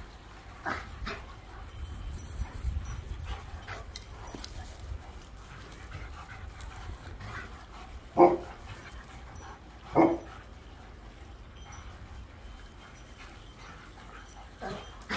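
Two dogs, a German Shorthaired Pointer and a black Labrador, playing rough with each other. A few faint short dog sounds come about a second in, and two loud barks come about eight and ten seconds in.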